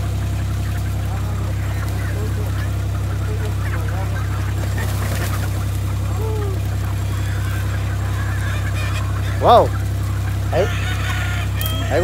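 A flock of free-ranging chickens and gamefowl, with a few scattered short calls over a steady low hum.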